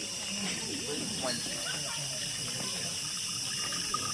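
Steady high-pitched hiss of rainforest ambience, with faint voices of people talking nearby.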